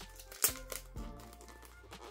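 Quiet background music under the crinkling and handling of a photocard being slid out of its black sleeve, with a sharp crackle about half a second in.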